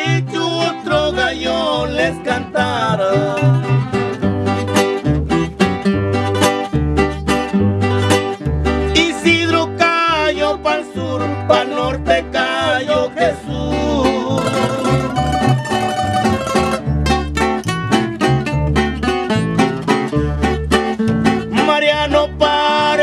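Instrumental break in a corrido, with no singing: a plucked-string lead melody over a bass line that changes notes about once a second.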